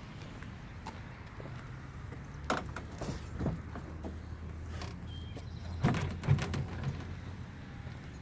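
The tilting hood of a Freightliner Cascadia semi truck being pulled forward and swung open: a few knocks and clunks, loudest in a cluster about six seconds in, over a steady low hum.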